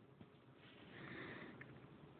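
Near silence, with a faint, short sniff about a second in.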